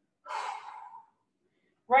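One audible breath from a woman, a single breathy rush lasting under a second, taken while she holds a shoulder and chest-opening stretch.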